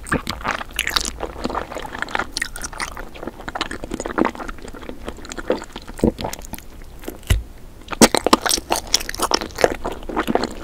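Close-miked eating: biting into and chewing a round red jelly sweet, a dense run of sharp wet clicks and crunches, with a brief lull and then the loudest burst of bites about eight seconds in.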